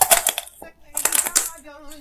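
Crisp cracking and crunching of a hard candy shell as a candy-coated cherry is bitten, in sharp crunches at the start and again about a second in.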